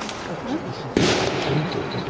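A single gunshot firing a blank about a second in, a sharp crack with a short echoing tail, over the steady talk of onlookers.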